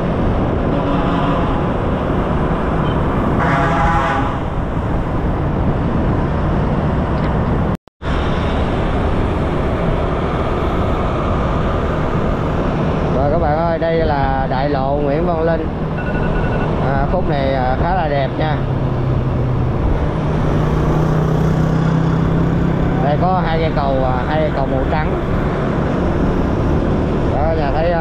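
Steady wind and road noise from a motor scooter riding in city traffic, with the scooter's engine and passing motorbikes and cars under it. The sound cuts out briefly about eight seconds in.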